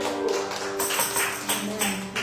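Acoustic guitar strummed in a steady rhythm, with held chord tones sustaining beneath the strokes, in an instrumental passage of a worship song.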